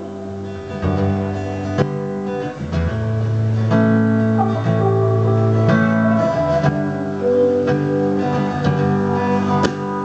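Live band playing an instrumental passage with no singing: a strummed acoustic guitar over bass and drums, with held melodic notes changing every second or so and a few sharp drum hits.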